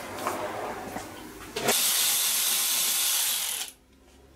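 Cordless impact driver running for about two seconds, spinning out a bolt of a GY6 scooter engine's belt cover, then cutting off. Before it, some light clatter of tools being handled and a click.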